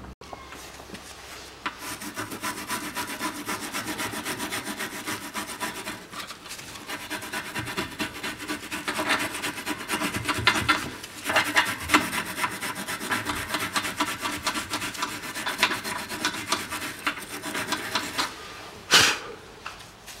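Hand wire brush scrubbing the bare bushing eye of a Toyota Camry XV40 rear knuckle, cleaning the metal seat before a new silent block is pressed in. It makes rapid back-and-forth scraping strokes in several spells, starting about two seconds in. There is a brief louder clatter near the end.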